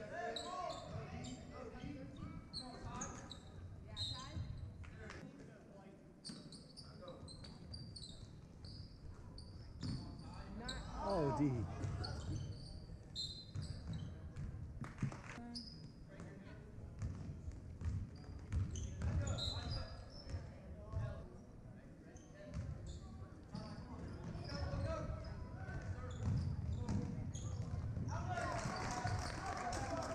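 Basketball dribbled on a hardwood gym floor, with short high sneaker squeaks and spectators' voices in the background; the voices grow louder near the end.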